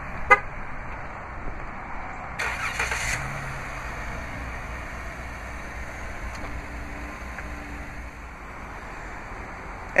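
A short horn chirp as the remote start is triggered. About two and a half seconds later the 3.6-litre Pentastar V6 cranks and fires by remote start, then settles into a steady idle.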